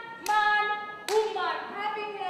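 Children's voices singing two held notes, each opening with a sharp clap and falling away in pitch at its end.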